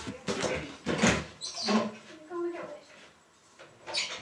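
Quiet, indistinct speech in short fragments, with a few clicks or knocks between them and a short hush about three seconds in.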